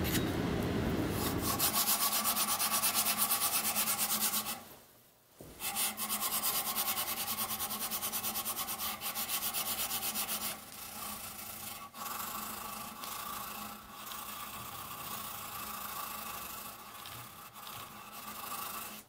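Steel round-knife blade being hand-sanded with wet abrasive paper: fast, even back-and-forth rubbing strokes, with a short break about five seconds in and softer strokes after about ten seconds. At the start, a low rumble from wet grinding of the blade cuts off about two seconds in.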